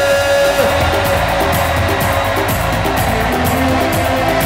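Live worship music: a band with an even drum beat and sustained chords, with a long held sung note that ends about half a second in.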